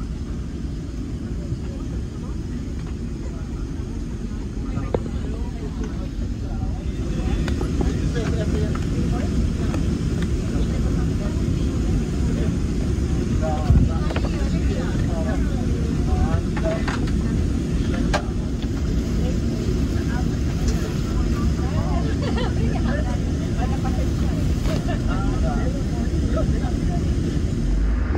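Steady low rumble of a Boeing 767-300ER's economy cabin, with other passengers' voices murmuring in the background from about seven seconds in and a few small handling clicks.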